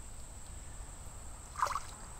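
Shallow creek water trickling and lapping, faint and steady, with one brief louder sound about a second and a half in.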